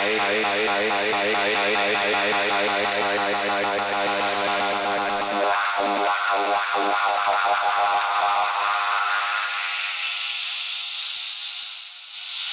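Electronic dance music from a live DJ mix: a held, wavering melodic line over bass. About five and a half seconds in, the bass drops out, and near the end a filter sweep rises in pitch and falls back.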